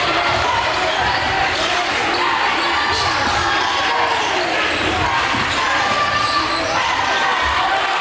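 Basketball dribbled on a hardwood gym floor, a series of low thuds, under the chatter of voices in the gym.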